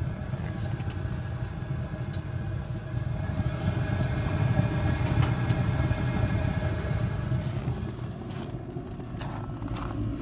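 Propane power burner on a dual-fuel outdoor wood boiler running, with a steady low roar of its blower and flame. A few faint clicks sound over it.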